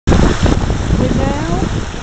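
Meltwater stream running and splashing between rocks close to the microphone, mixed with wind buffeting the microphone. A short rising voice sound comes just after a second in.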